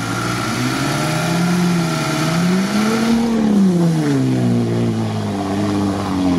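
GAZ-63 truck's engine revving under load as it pushes through deep swamp water. The pitch climbs for about three seconds, drops off about a second later and then holds at a lower, steadier speed.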